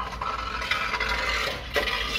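A passing vehicle's loose muffler dragging along the road: a continuous metallic scraping rasp over the low hum of its engine.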